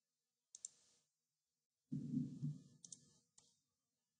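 Computer mouse clicking as files are opened: a quick double click about half a second in, another double click near three seconds and a single click just after. A louder, muffled low noise comes around two seconds in.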